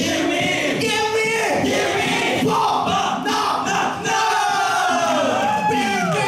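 Male a cappella group singing loudly together, several voices at once, with some lines gliding in pitch and one held note near the end.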